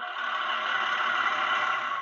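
A school bus driving past, its engine and tyre noise a steady rush.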